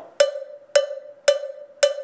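Handheld cowbell struck four times on its mouth with the shoulder of a stick, evenly about half a second apart, each strike ringing on one steady pitch, left open and unmuted.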